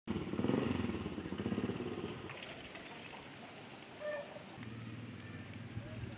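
A vehicle engine running, loudest in the first two seconds and then fading into outdoor background. A short pitched call comes about four seconds in, and a low steady hum sets in soon after.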